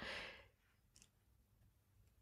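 A faint breath trailing off in the first half second, then near silence.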